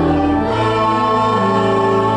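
Slow church music: held organ-like chords moving step by step, with voices singing along.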